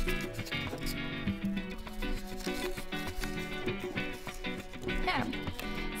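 Background music of steady held notes that change step by step.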